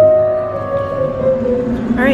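Digital piano being played live, a slow phrase of notes stepping downward and dying away toward the end.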